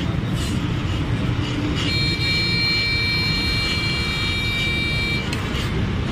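Steady street traffic noise, with a vehicle horn held for about three seconds starting about two seconds in.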